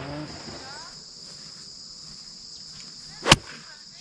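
Sharp crack of a golf club striking the ball about three seconds in, over a steady high-pitched drone of insects.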